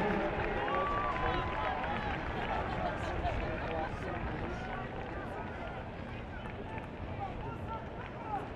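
Stadium crowd noise: many spectators' voices overlapping in a steady murmur, easing a little in loudness.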